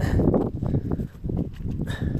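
Footsteps and rustling as a person walks over dry ground: a quick, irregular run of short crunches and scuffs.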